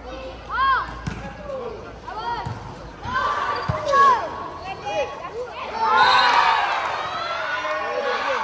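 Children shouting and calling during a volleyball rally, with a few thuds of the ball being struck or hitting the court in the first four seconds. About six seconds in, many young voices shout and cheer at once.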